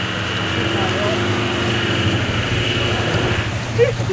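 Winch running steadily as it drags a stalled Land Rover Defender 110 through deep water: a low drone with a whine above it that stops shortly before the end.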